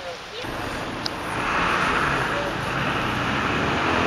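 Outdoor urban ambience: a steady rushing noise that swells about a second in, with faint distant voices.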